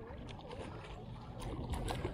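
Water splashing and lapping as a hooked calico bass is reeled up to the surface beside a boat, the splashing growing louder near the end as the fish breaks the surface.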